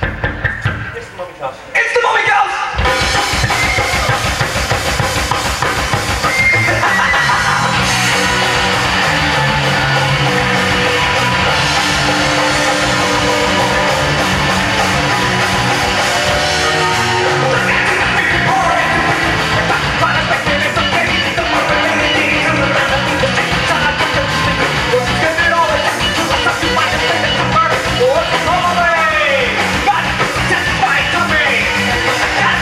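A live rock band starts up about three seconds in and plays loud and continuously: drum kit, electric guitar and a singer on a microphone.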